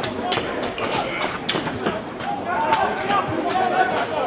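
Indistinct shouting and calls from rugby players and sideline spectators during a ruck, with a few short sharp knocks mixed in.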